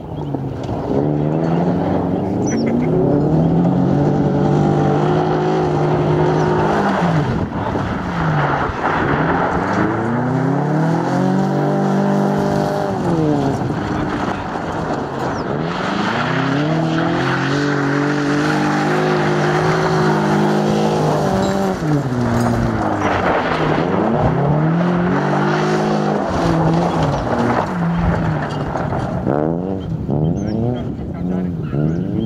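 Opel Corsa B GSi's 1.6-litre 16-valve four-cylinder engine revving hard on a gravel rally stage, its pitch climbing and dropping back again and again as the car accelerates, shifts and lifts off through the corners.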